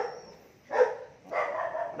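A dog barking, a short bark a little under a second in and more barking about half a second later.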